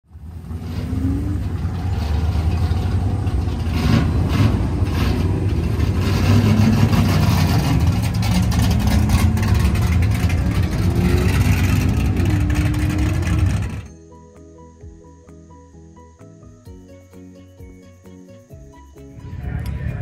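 A Holden VG ute's engine running loud, with a few rising revs, as the car pulls away across the pits. About fourteen seconds in it cuts off suddenly to a short, soft music sting.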